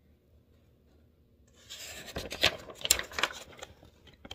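A picture book's paper page being turned by hand: a rustle lasting about two seconds, starting past the middle, with several sharp crackles in it.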